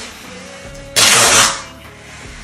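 Masking tape peeling off its roll as it is laid along a joint between MDF strips: one loud tearing burst about a second in, lasting about half a second.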